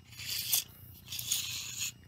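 Retractable tape measure's metal blade being pulled out of its case by hand: two scraping pulls, a short one near the start and a longer one in the second half.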